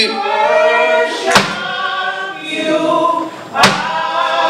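Unaccompanied gospel worship singing: a man singing into a microphone with congregation voices joining in, in long held notes that glide in pitch. Two sharp knocks cut through, about a second and a half in and again near the end.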